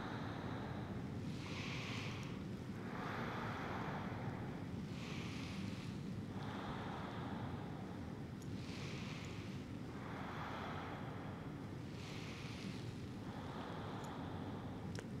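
Slow, rhythmic human breathing close to the microphone: a soft breath in and a breath out roughly every three and a half seconds, paced with the exercise, over a steady low room hum.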